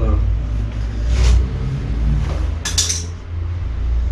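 A few short metallic clinks and rattles, about a second in and again near three seconds in, as the bicycle is handled, over a steady low rumble that cuts off right at the end.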